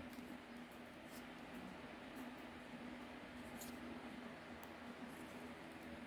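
Faint handling noise: a few light, scattered clicks and rubbing as a titanium-handled Sebenza folding knife is turned over in the hands, over a low steady room hum.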